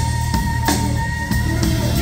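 Electric guitar solo with one long, high note held, over a rock drum kit with a few cymbal hits and a steady low end.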